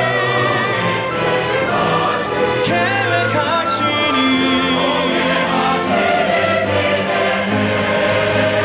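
A large church choir singing a Korean hymn with orchestral accompaniment. A male soloist singing into a microphone joins in, with a wavering solo voice standing out about three seconds in.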